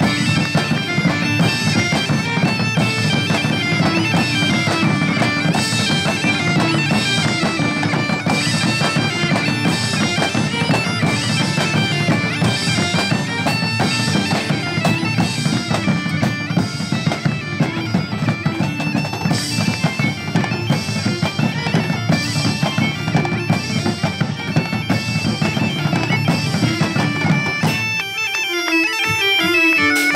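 Galician gaita (bagpipe) playing a lively tune over its steady drone, with drums beating a regular rhythm. About two seconds before the end the low drone drops away and the music thins out.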